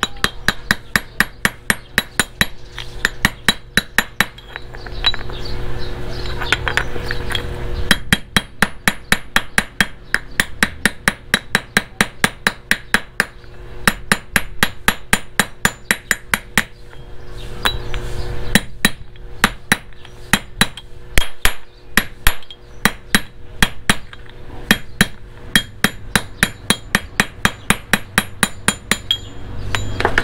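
Ball-peen hammer tapping a steel socket held against a motorcycle clutch pressure plate: a long run of sharp metallic strikes, about two to three a second, broken by a few short pauses.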